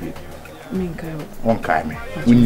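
A person's voice in two short, low utterances about a second apart, rather than full sentences.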